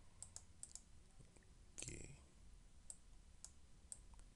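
Faint, scattered computer mouse clicks, about six of them at irregular intervals, over near silence.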